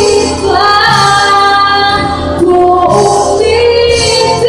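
A woman singing with band accompaniment in a live stage performance, holding long notes that slide up and down in pitch.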